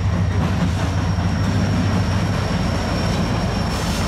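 CN SD40-2 diesel locomotive passing close by, its EMD two-stroke V16 engine running with a loud, steady low rumble.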